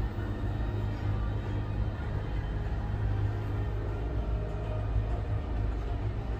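A steady low rumble, with faint music underneath.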